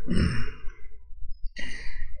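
A man's breathing close to the microphone: a breathy sigh about half a second long at the start, then a shorter breath near the end.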